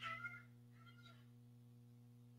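Near silence: a steady low electrical hum, with two faint, brief high-pitched sounds, one at the start and one about a second in.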